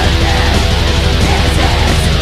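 Loud death metal music: distorted electric guitars over rapid, steady low drum beats.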